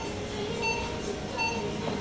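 Electronic beeping from operating-theatre equipment: a steady tone that swells into a short beep about every 0.7 seconds, over a low steady machine hum.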